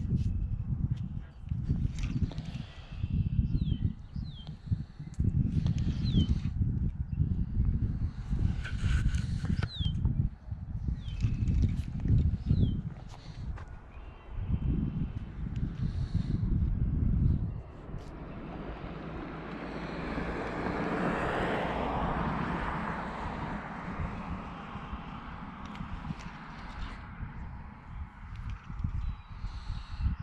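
Wind buffeting the microphone in gusts, with a few short falling bird calls. Near the middle the gusts stop, and a steady noise swells and fades over about ten seconds, like a passing vehicle.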